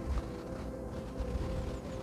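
The slow-playing organ of the former St. Burchardi church, heard from outside through its walls: a steady held chord of several unchanging tones, the drone the listener calls a howl. Wind rumbles on the microphone underneath.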